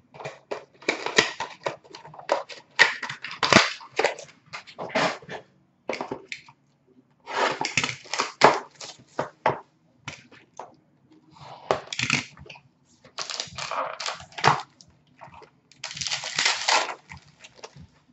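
A hockey trading-card box and its packaging being torn and crinkled open, in repeated crackling bursts with short pauses.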